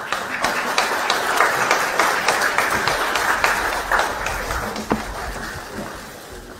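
Audience applauding, starting suddenly and thinning out over the last couple of seconds.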